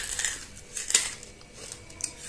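Hard white banslochan chunks being chewed close to the microphone: crisp, crackly crunches, loudest at the start and again about a second in.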